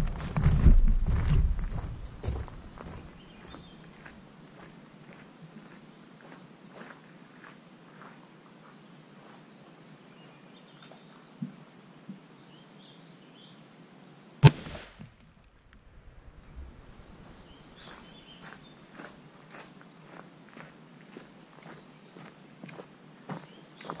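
A single sharp report from a 6.5 Creedmoor rifle firing a low-velocity load into a ballistic gel block, about halfway through. Before it, footsteps in the first couple of seconds, then quiet outdoor ambience with a few faint bird chirps.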